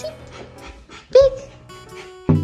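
Light acoustic guitar background music, with an excited Japanese Spitz giving one short, loud, high whine about a second in.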